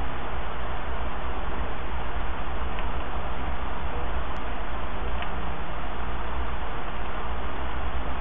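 Steady background hiss on a home screen-recording microphone, with three faint clicks of a computer mouse near the middle.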